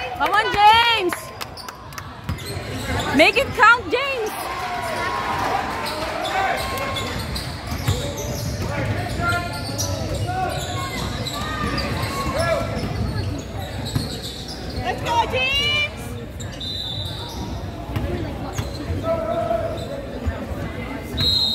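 Basketballs bouncing on a hardwood gym floor in a large gym, mixed with people's voices and occasional shouts, the loudest about three to four seconds in and again near fifteen seconds.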